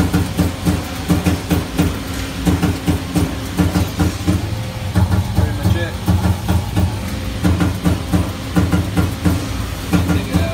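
Shop machinery running with a steady, rhythmic low throb, about three pulses a second.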